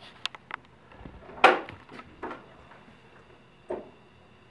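Hard plastic knocks and clacks from a toddler handling a plastic ride-on toy fire truck, its hinged seat lid among them: a few light clicks, one loud clack about a second and a half in, and smaller knocks after two seconds and near the end.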